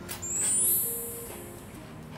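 A bright electronic swish sound effect that climbs in pitch over about a second, the kind that marks an on-screen caption appearing, over soft background music with held notes.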